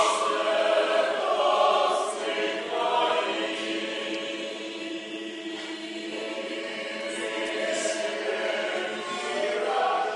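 A choir singing, many voices holding long notes together, louder at first and quieter through the middle.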